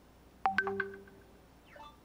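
A short electronic chime: a quick run of a few bright pitched notes about half a second in that rings and fades within about a second, followed near the end by a faint brief falling blip, like a phone or computer notification sound.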